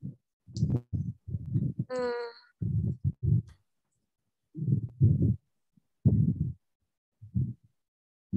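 Muffled, low puffs and thumps in uneven bursts picked up close to a headset microphone, with a hesitant voiced "uh" about two seconds in.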